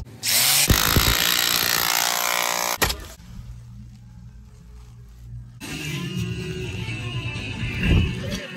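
A handheld cordless power tool runs loudly for about the first three seconds, then stops abruptly; music plays through the rest.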